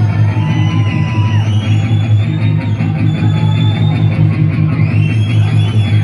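Thrash metal band playing live at full volume: distorted electric guitar, bass and drums over a heavy, steady low end, with a high line sliding up and down in pitch above it.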